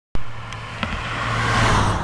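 A car passing close by on the road, its engine and tyre noise swelling to a peak near the end and then starting to fade.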